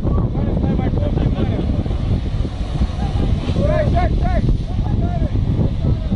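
Wind buffeting the microphone over a low rumble from the Caterpillar 323D excavator's diesel engine, with people calling out, a few short shouts a little past halfway.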